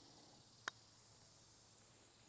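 One short click of a putter striking a golf ball, about two-thirds of a second in, against near silence.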